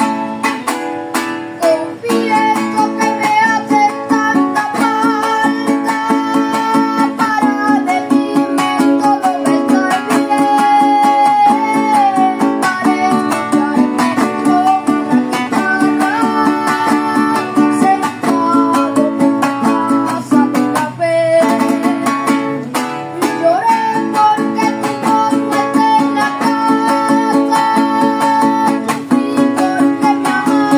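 A Venezuelan cuatro strummed in a steady, fast llanero rhythm, with a boy's voice singing over it.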